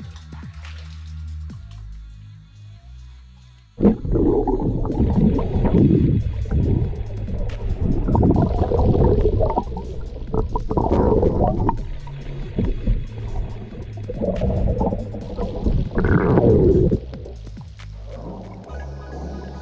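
Background electronic music with a steady bass line. About four seconds in, loud, muffled rushing and gurgling water noise cuts in over it and runs in uneven surges until just before the end: water heard from a microphone submerged in the cave pool.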